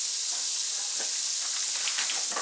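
Garlic butter sizzling steadily in a large non-stick frying pan, stirred briefly with a wooden spatula at the start.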